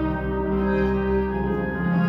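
Background music: slow, sustained instrumental chords with a low bass line, changing chord near the end.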